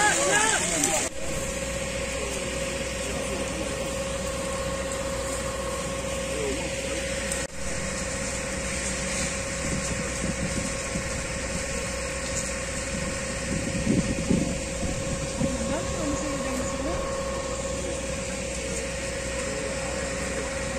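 An engine running steadily at idle, a constant hum with a steady whine over a low rumble. Voices are heard faintly over it.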